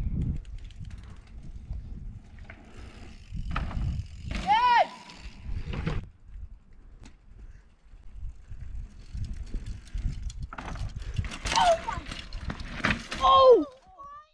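Wind buffeting the microphone while a mountain bike rides a dirt track. There is a short shout about four seconds in, and several more shouts near the end, the loudest just before it.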